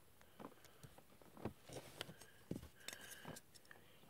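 Faint, scattered clicks and taps of small plastic snap-fit model-kit parts (a Bandai mini-pla GoGo Dump kit) being handled and pressed together.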